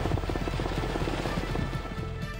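Helicopter rotor beating rapidly and steadily, with music underneath.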